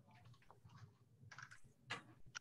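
Faint computer keyboard typing: a few soft, scattered key clicks, the loudest near the end.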